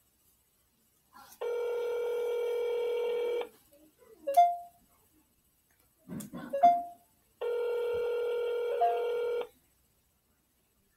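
Telephone ringback tone heard over a phone's speaker: two rings of about two seconds each, six seconds apart in the North American ring cadence, as the dialled number rings without being answered. Between the two rings come a few short, louder sounds with brief high blips.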